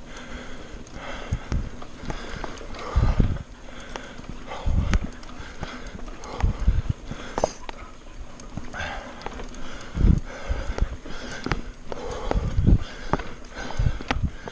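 Mountain bike riding fast over a rough dirt trail: a continuous rattle and rumble from the bike, broken by irregular heavy thumps as it hits bumps, with the rider breathing hard.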